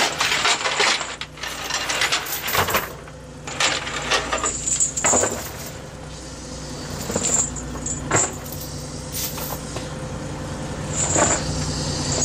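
Chain and weighted net line clinking and rattling against the boat's rail as a gill net is hauled aboard, in irregular clatters, over a steady hum of the boat's machinery.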